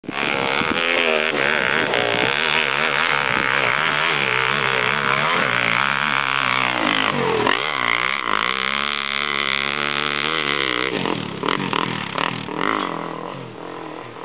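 Dirt bike engine revving hard under load on a steep climb, its pitch wavering with the throttle. About seven seconds in, the note dips sharply and then holds steadier and lower, and over the last few seconds it fades as the bike moves away up the hill.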